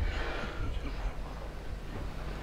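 A pause in speech: quiet room tone with a steady low hum and a faint breath near the start.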